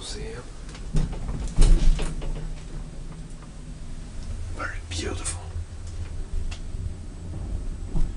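Elevator door being shut: a knock about a second in, then a loud clunk half a second later, over a steady low hum; a brief murmured voice near the middle.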